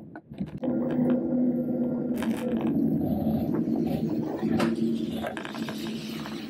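Heavy lorry's diesel engine running close by, a steady low hum that starts about half a second in, with scattered sharp clicks over it.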